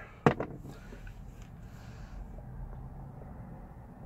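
A single sharp click just after the start, then faint, steady low background noise of a closed car interior.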